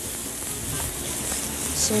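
Cubes of entrecôte sizzling in a hot frying pan as they are seared and stirred with a wooden spoon, a steady hiss.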